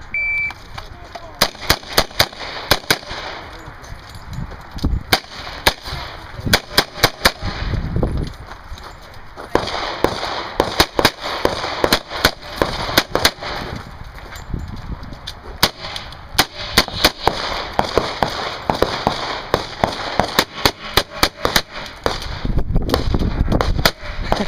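A shot timer's start beep, then a competitor's revolver firing many rapid shots in several quick strings separated by pauses of a second or two.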